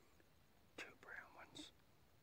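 A short whispered phrase, about a second long, from a person close to the microphone.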